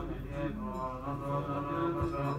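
Low male voices chanting a mantra in a steady, slow drone, pitched deep and changing note every so often.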